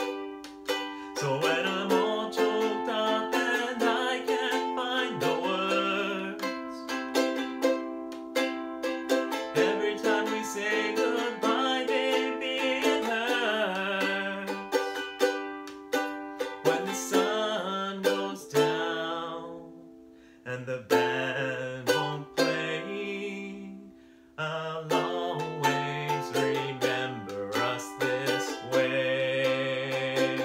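Ukulele strummed in chords as a song accompaniment, thinning out briefly twice about two-thirds of the way through.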